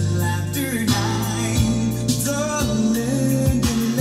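A song with a singer over a steady bass line, playing back from cassette through hi-fi speakers while the tape is being dubbed to a second cassette deck.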